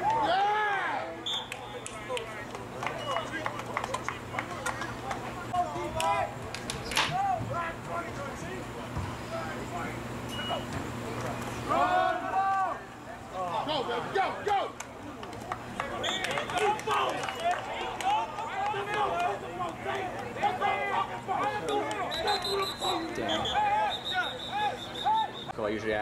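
Indistinct shouting and calling from players and people on the sideline during an outdoor football game, voices overlapping throughout. Two short, high steady tones sound near the end.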